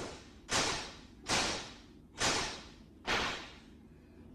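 A string of whoosh sound effects, four in a row about once a second, each a short rush of noise that swells quickly and dies away.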